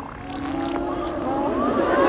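Live concert sound with the music low, crossed by a few high sweeping tones that rise and fall quickly, and crowd noise building toward the end.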